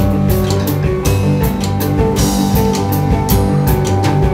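Live rock band playing: electric guitar, bass guitar, keyboard and drum kit, with steady drum hits.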